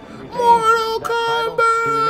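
A high voice singing long held notes, loud: two sustained notes in the first second and a half, then a third starting near the end.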